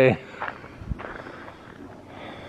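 Footsteps in snow, faint and uneven, with a dull low thump about a second in.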